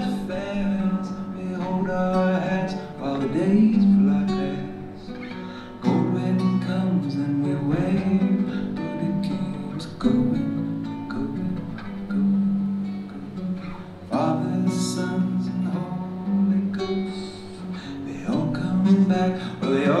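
Solo acoustic guitar played live in an instrumental passage of a folk song, with a new chord struck about every four seconds.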